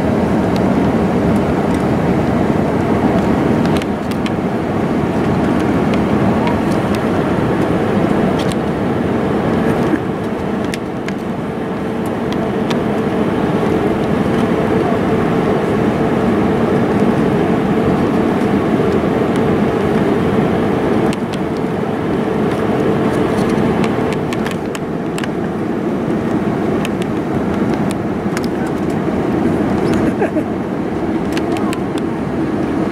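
Steady cabin roar of an Airbus A320-family airliner's engines and airflow on final approach, heard from a window seat over the wing. A steady hum rides on top from about eight seconds in until about twenty-four seconds in.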